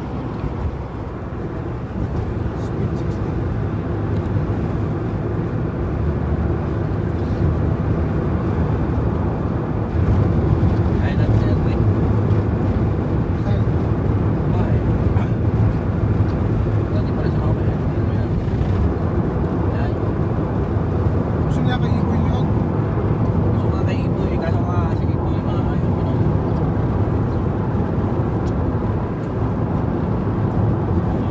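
Car cabin noise while driving: steady engine and tyre rumble heard from inside the car, growing louder about ten seconds in.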